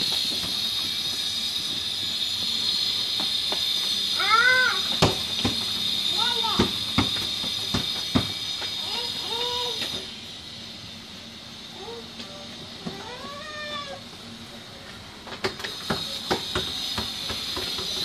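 Toddlers' short wordless squeals and calls, each rising and falling in pitch, with scattered knocks of a ball and small feet on the tiled floor. Under them runs a steady high-pitched hiss that drops away for a few seconds about ten seconds in.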